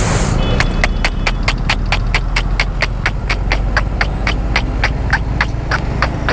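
Motorcycle running at low road speed with a steady low rumble, under a rapid, even clicking about five times a second.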